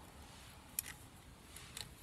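A single sharp click just under a second in, then a few faint ticks near the end, from fingers handling thin snare wire on a wooden branch.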